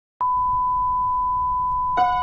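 A steady pure electronic tone starts abruptly just after silence and holds one pitch, with a low rumble underneath. It is the opening drone of the film's music score, and a plucked harp-like note joins it at the very end.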